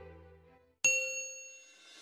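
Background music fades out, then a single bell-like ding sounds about a second in and rings away: an edited-in notification-bell sound effect.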